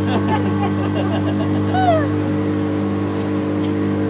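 Motorboat engine running steadily at cruising speed, a constant hum under the wash of the wake. A voice calls out briefly with a high, falling pitch about two seconds in.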